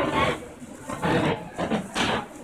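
A person's voice in short bursts: near the start, about a second in and again just before the end.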